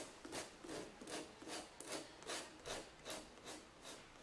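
Professional-grade nail file rasping back and forth over the thin sheet-metal edge of a wooden craft shape, in faint, even strokes about twice a second, smoothing the sharp metal edge down.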